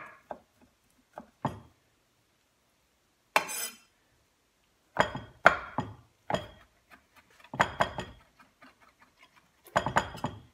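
Kitchen knife chopping capers and basil on a wooden cutting board: a few scattered knocks, a short scrape about a third of the way in, then a quicker run of chops in the second half.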